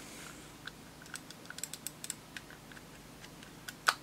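Plastic shell of a Logitech M90 mouse being wiggled back onto its base: a scattered run of small plastic clicks and ticks, with one louder click near the end as it seats.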